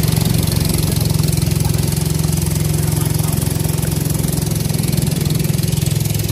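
Engine of a motorized outrigger boat (banca) running steadily at cruising speed as the boat moves along the river.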